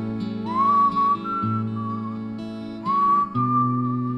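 A melody whistled in two phrases, each starting with an upward slide into a held note, over the song's instrumental backing of sustained chords and bass.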